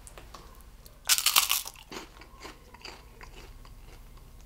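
A crisp, salt-fried prawn cracker bitten with a loud crunch about a second in, then chewed with a few smaller crunches.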